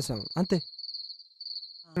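Crickets trilling: one steady, high, finely pulsing trill that goes on under a man's brief phone talk.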